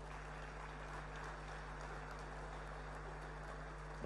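A pause in the speech: steady, quiet room noise of a large hall picked up by the podium microphone, with a faint low electrical hum.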